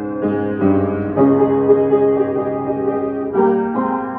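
Upright piano played by hand: a slow passage of sustained notes and chords, with one chord held for about two seconds in the middle.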